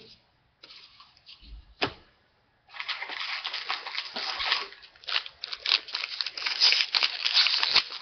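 A foil trading-card pack wrapper being torn open and crinkled: one sharp click about two seconds in, then continuous crackly tearing and rustling from about three seconds in.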